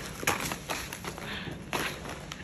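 About four light taps and scuffs in two seconds, from sneakers and a crumpled ball of plastic sticker backing on a smooth painted concrete floor as it is kicked and dribbled around.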